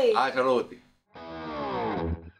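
A voice calling out trails off, and about a second in a distorted electric guitar enters with a long downward slide, opening a piece of background music.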